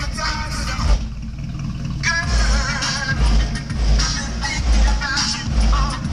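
Hip hop music with a heavy bass beat and a singing voice, played loud from the car's sound system.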